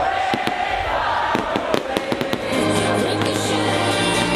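Fireworks going off in a rapid, irregular string of bangs over loud electronic dance music with a held synth chord. A deep bass note comes in about halfway through.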